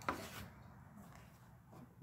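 A single light knock at the very start as painting supplies are set down on the plastic-covered table, then faint handling sounds over a quiet room.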